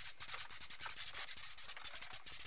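Compressed-air paint spray gun spraying paint: a continuous hiss of air and atomised paint that flutters rapidly in strength.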